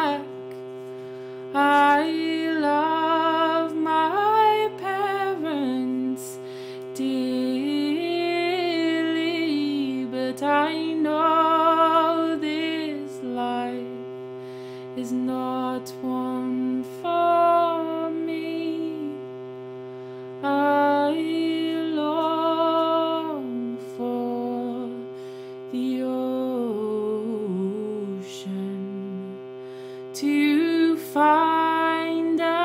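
A solo voice singing a slow melody in held, wavering notes over a steady two-note reed drone from a hand-pumped shruti box. The melody steps down near the end.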